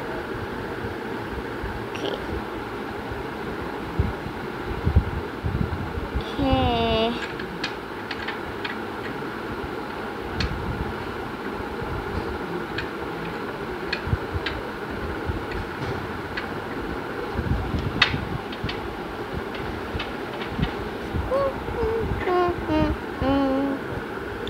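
Steady room hum with a few light clicks and taps as small glass nail polish bottles and their brushes are handled on a glass tabletop. Short hummed voice sounds come about seven seconds in and again near the end.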